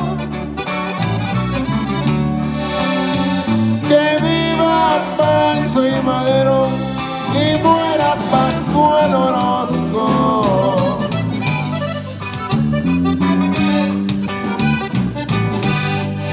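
Norteño conjunto playing an instrumental break of a corrido in polka rhythm: button accordion carrying the melody over a strummed bajo sexto and bass.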